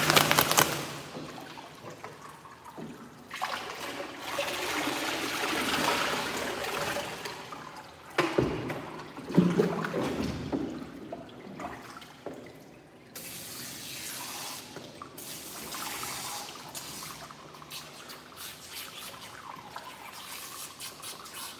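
Water splashing and running over a border collie's soaked coat during a bath, with hands squeezing and rubbing the wet fur. The water comes in spells, louder in the first half.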